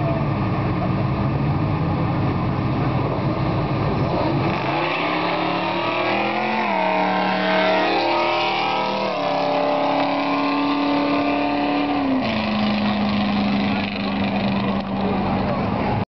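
Drag-race launch of a Plymouth Duster 340's small-block V8 and a Mustang. The engines rumble at the line, then launch about four and a half seconds in. The engine note climbs and drops back at each upshift, then holds a steady tone as the cars run off down the strip.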